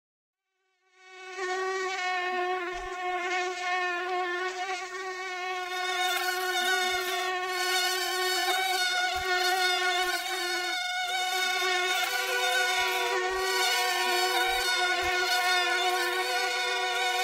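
A mosquito-like buzzing whine from an experimental electronic track: a steady, slightly wavering pitched drone that fades in about a second in and grows brighter around six seconds in, with a few sparse low thumps underneath.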